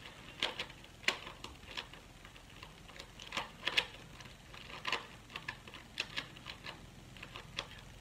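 Plastic clicking and clattering of a Kilominx (2x2 Megaminx) twisty puzzle being turned by hand, in irregular light taps a few per second. Its layers are loose, with nothing holding them in place.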